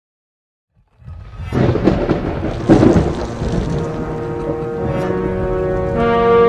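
Channel intro: after about a second of silence, a loud, noisy crash sound effect sets in suddenly and peaks two to three seconds in, then gives way to sustained chords of intro music that grow louder toward the end.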